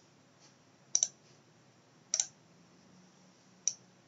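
Computer mouse clicking: a quick pair of clicks about a second in, another pair about two seconds in, and a single click near the end.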